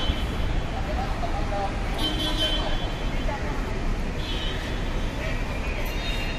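Steady traffic rumble with indistinct background voices, broken by three short high-pitched squeals.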